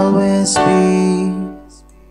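Playback of a home-recorded song mix: grand piano with a sung vocal that has reverb and echo added. It ends on a held note that fades out about one and a half seconds in.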